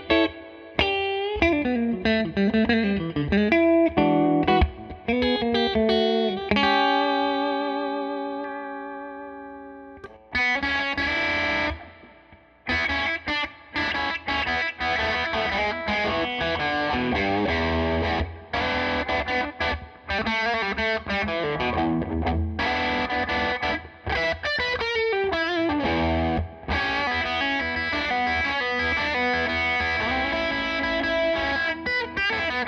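Collings 290 DC electric guitar with Lollar P90 pickups on the middle pickup setting, played through a Tone King Metropolitan amplifier. It opens with quick single-note lines with bends, then a chord is left ringing with a wavering pitch and dies away. From about ten seconds in come choppy, rhythmic funk chords with short stops.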